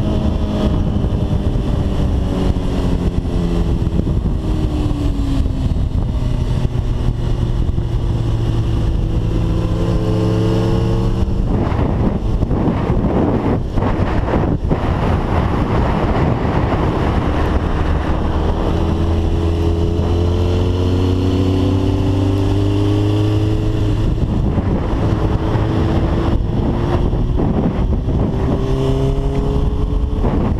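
2005 Suzuki GSX-R 1000's inline-four engine pulling hard on track, its pitch climbing under acceleration, twice. Heavy wind rush on the microphone swamps the engine for several seconds in between.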